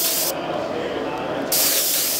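Siphon-feed airbrush spraying paint, a steady hiss of air and paint mist.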